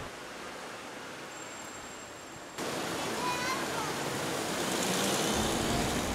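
Outdoor city street ambience: a steady wash of background noise. It is faint at first, then steps up suddenly about two and a half seconds in to a louder hiss with distant voices in it.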